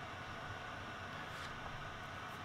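Faint, steady hiss of a Tenma mini SMD preheater's fan blowing hot air.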